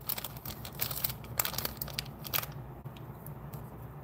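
Trading cards being handled and flipped through by hand: faint clicks and rustles of card stock, busiest in the first two and a half seconds and thinning out after.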